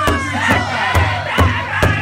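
Several men striking a large powwow drum in unison, a steady beat a little over two strokes a second, while singing a grand entry song in high voices.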